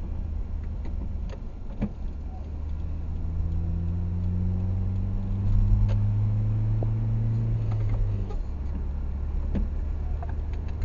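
Inside a moving car on a motorway: steady low engine and road rumble, with the engine note rising slowly for a few seconds as the car pulls along, then dropping away about eight seconds in.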